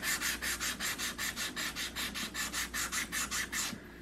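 Sanding stick with sandpaper rubbed quickly back and forth along the edge of a wooden rat trap, about six even strokes a second, stopping shortly before the end. It is smoothing off the rough, splintery edge of the trap's wood.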